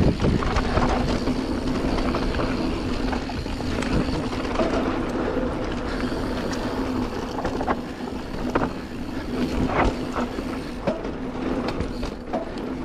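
Canyon Spectral full-suspension mountain bike descending a dirt trail at speed: tyres rolling on packed dirt, wind noise and a steady hum, with scattered rattles and knocks from the bike as it hits bumps.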